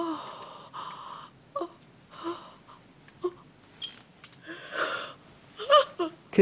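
A woman's breathy gasps and short sobbing cries in separate bursts, the loudest at the start and another pair near the end.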